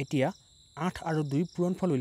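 A man speaking, explaining a sum, with a short pause in the first second; behind the voice runs a steady, faint high-pitched tone.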